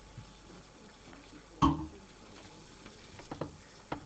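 Knocks and handling noise at a lectern microphone as the speaker settles in: one sharp thump about a second and a half in, then a few lighter knocks near the end, over the hush of a room.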